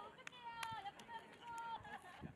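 Faint, high-pitched voices of a group of people calling out and laughing, with a few light clicks.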